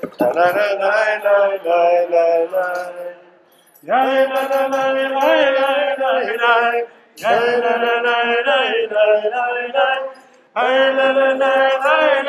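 Liturgical singing in a synagogue service, a clear voice chanting a melody in phrases of about three seconds with short breaths between them.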